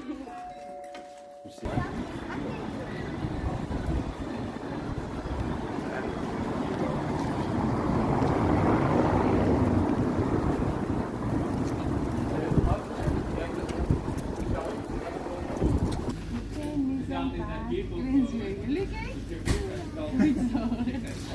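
Wind buffeting a phone's microphone over outdoor street noise, swelling to its loudest about halfway through and dropping away a few seconds before the end, when voices take over.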